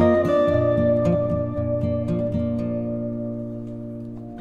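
Background music of gently plucked guitar, growing gradually quieter.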